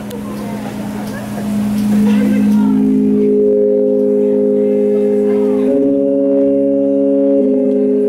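Sustained organ-style chords on a Nord Electro stage keyboard, swelling in over audience chatter and holding steady from about two and a half seconds in. The chord changes twice, near six and seven and a half seconds in.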